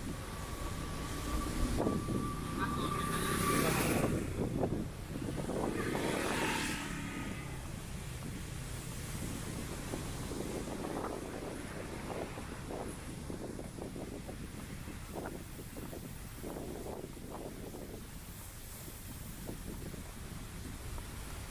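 A motor vehicle passing, loudest in the first several seconds, over steady outdoor background noise. Faint, scattered voices follow.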